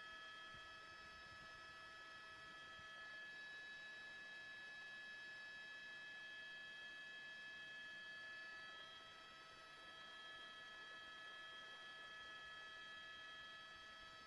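Near silence, with a faint steady whine of several high tones, one of which drops out about three seconds in.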